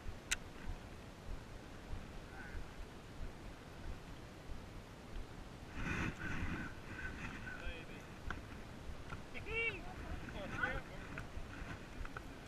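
Indistinct voices of people on a boat, heard twice in the second half, over low wind and water noise on the microphone, with one sharp click shortly after the start.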